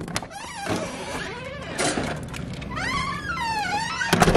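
Knocks and clicks of a window latch and frame being handled, then a high wavering whine that bends up and down near the end.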